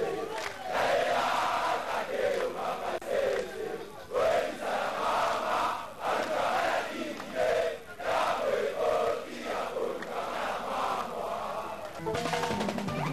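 A large crowd of young men chanting together in unison, in short loud phrases of about a second each, one after another.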